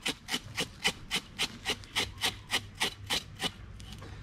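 A knife blade scraping scales off a whole coral trout in quick, even rasping strokes, about five a second. The scales come off easily.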